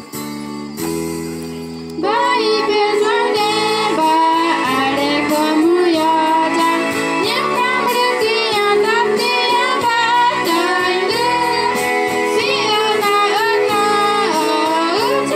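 Young female voices singing a gospel song into a microphone over an amplified backing track. The backing music plays alone for about two seconds before the singing comes in, louder, and carries on.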